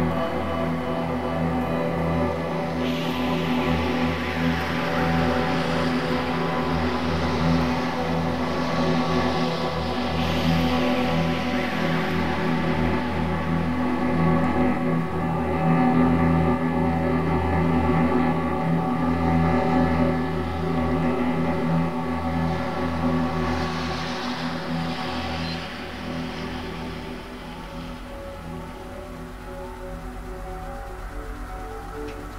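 Experimental industrial music: a dense drone of many layered steady tones, with washes of rushing noise swelling up about three seconds in, again around ten seconds and near 23 seconds. The drone thins out and gets quieter in the last few seconds.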